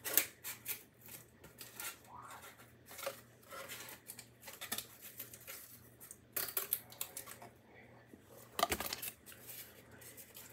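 Scissors snipping through cardboard in irregular cuts, with the loudest run of snips near the end.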